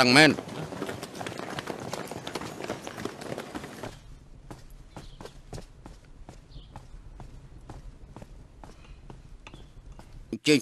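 A short stretch of busy noise, then, from about four seconds in, footsteps on hard ground at about three steps a second.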